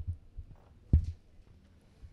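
Handling thumps on a corded handheld microphone as it is passed along a table: a low bump at the start and one sharp, louder thump about a second in, over faint low hum.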